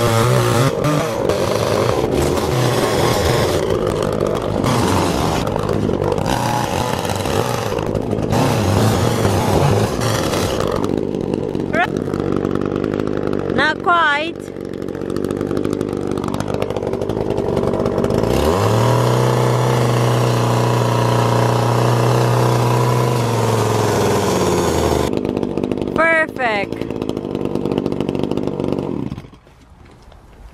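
Two-stroke chainsaw running while cutting through the base of a Christmas tree trunk. About two-thirds of the way through the engine revs up and holds a steady high note for several seconds, then the saw cuts off just before the end.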